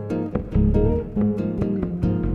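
Instrumental music: an acoustic guitar picking a quick run of melody notes over a bass guitar line, with the bass sliding briefly between notes.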